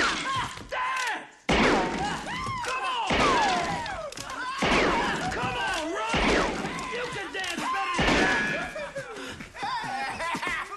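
Revolver shots fired indoors, about four loud bangs spread over several seconds, with men's voices hollering and laughing between them.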